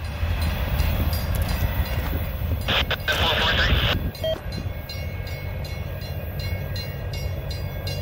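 Norfolk Southern double-stack intermodal freight train rolling past, with a steady low rumble of wheels on rail. A brief, louder rush of noise comes about three seconds in.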